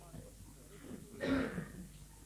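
A man clears his throat once, a short rough rasp about a second and a quarter in, over faint background hum.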